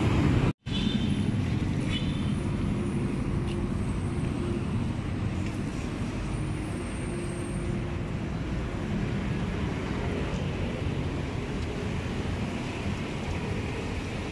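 Steady city street traffic: cars and motorcycles passing with a continuous engine and tyre hum. The sound cuts out for an instant about half a second in.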